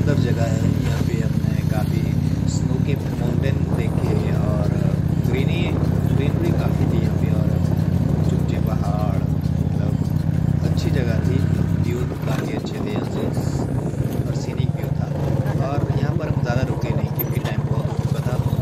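Royal Enfield Classic 350 single-cylinder engine running under way at a steady riding pace, heard close up from the handlebars. The engine note eases slightly about two-thirds of the way through.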